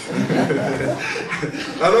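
Chuckling and light laughter, with a man's short laugh near the end.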